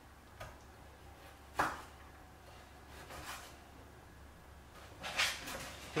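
Knife cutting on a wooden chopping board: a few scattered knocks, the loudest about a second and a half in, with fainter taps later.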